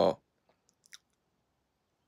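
The end of a spoken word, then three faint mouth clicks in the first second, then near silence.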